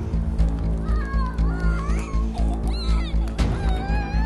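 Dramatic film score with a steady, pulsing low beat. High, wavering children's cries rise over it about a second in and again near the end.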